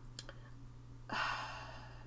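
A woman's sigh: one breathy breath of just under a second, about a second in, after a faint mouth click.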